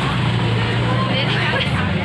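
A vehicle engine running steadily with a low, even hum, under faint background voices from people on the street.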